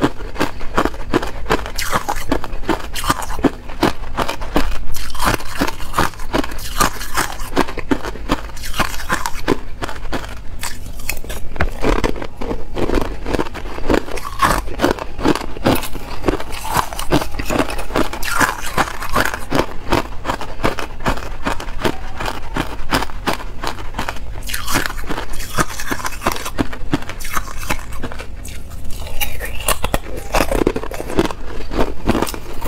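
Hard, clear ice cubes being bitten and crunched between the teeth, a fast, unbroken run of sharp cracking crunches picked up close by a clip-on microphone.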